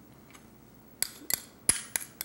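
A metal teaspoon clicking against a small jar while chopped garlic is scooped and scraped out: a quiet first second, then four sharp clicks about a third of a second apart, the third the loudest.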